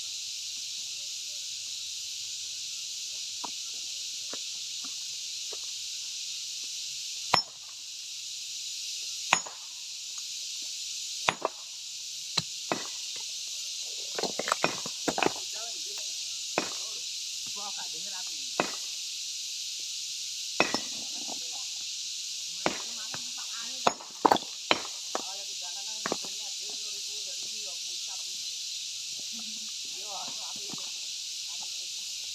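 Sharp clinks and knocks of an iron pry bar against hard stone as a boulder is split by hand, single strikes a second or two apart with a quick cluster near the middle and another later.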